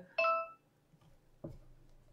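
A single short, bright ding, a bell-like chime that rings out within about half a second. A faint low knock follows about a second and a half in.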